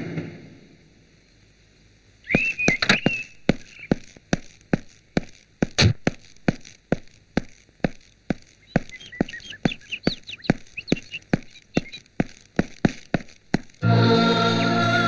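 About two seconds of quiet, then a steady run of sharp clicks, about three a second, with short bird chirps over them at first and again in the second half.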